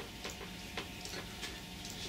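A few faint, irregularly spaced ticks over quiet room tone.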